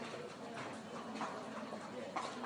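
Indoor riding-arena ambience: faint background voices over a steady hum of room noise, with no single event standing out.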